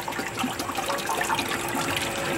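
Liquid filtrate pouring and splashing from a Vincent screw press's perforated screen into the trough below as the press dewaters sewage sludge, over a steady machine hum.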